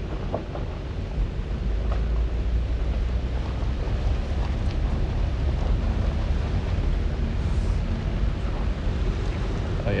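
Vehicle driving slowly on a gravel road, heard from inside: a steady low rumble of engine and tyre noise that swells slightly after about a second and then holds even.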